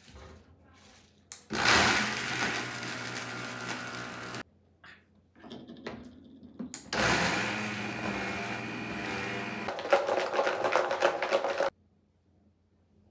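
High-speed blender grinding a jar of whole Oreo cookies into crumbs, run in two bursts of about three and five seconds that each stop abruptly. Late in the second burst the motor sound turns into a rapid clatter of cookie pieces against the jar.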